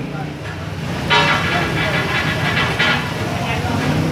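Busy roadside noise: a steady low rumble of traffic engines, with people's voices and a louder pitched sound from about one to three seconds in.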